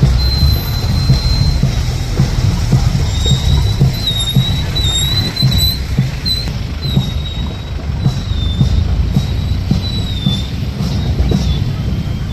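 Wind rumbling on the microphone, with a thin, high wavering tone over it: held briefly at the start, then wavering up and down from about three seconds in.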